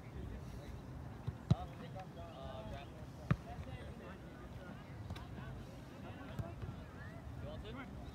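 Outdoor soccer game sound: distant shouts and voices from players and spectators across the field, with two sharp thuds, about one and a half and a little over three seconds in, that fit a soccer ball being kicked.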